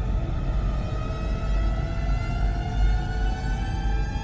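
Synthesized sci-fi ambient soundscape: a deep, steady rumble under a single tone with overtones that slowly rises in pitch.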